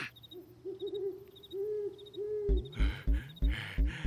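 An owl hooting, a run of short hoots. About two and a half seconds in, a steady low thumping beat starts, about three beats a second, each with a hiss.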